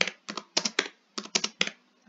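Typing on a computer keyboard: about a dozen quick keystrokes in two short runs, with a brief pause about a second in.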